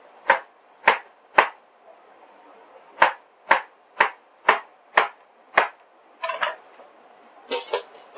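Chef's knife chopping down through watermelon onto a cutting board: three sharp chops, a pause, then six more at about two a second. Short scraping sounds follow near the end as the diced pieces are gathered off the board.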